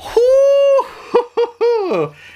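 A man laughing and whooping in a high falsetto: a held note of about half a second, two short yelps, then a falling cry.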